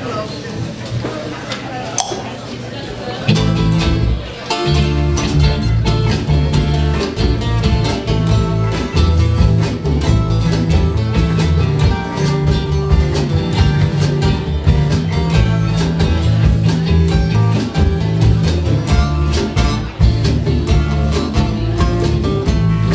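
Live folk-bluegrass band playing a song on acoustic guitars, upright bass, drums and electric guitar. After a quieter opening, the full band comes in about three seconds in with a steady beat and a strong bass line.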